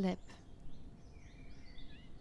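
Faint bird chirps, a few short sliding notes, over a low steady hiss.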